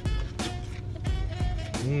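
Background music: a jazzy boom-bap hip-hop instrumental with a steady drum beat. Near the end a man makes a short "mmm" while eating.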